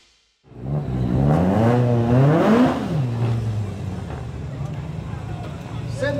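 Rally car engine revved, its pitch climbing with a wavering edge over about a second and a half, then falling back to a steady idle.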